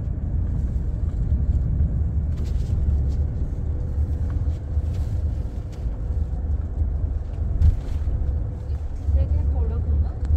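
Cabin noise of a moving car: a steady low rumble of engine and tyres on the road, with a few light knocks from bumps, the sharpest about three-quarters of the way through.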